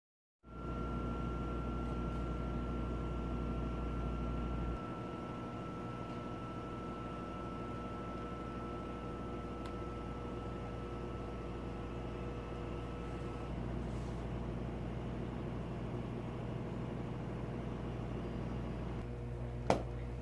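Steady machine hum with a couple of faint steady tones running through it; the deepest part of the hum drops away about a quarter of the way in, and a single click comes near the end.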